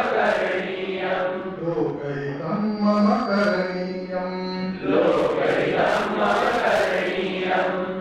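A Sanskrit song being sung, slow and melodic, with one long held note from about two and a half seconds in to nearly five.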